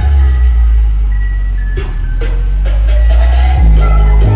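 Loud music with a heavy bass, played over a carnival sound system.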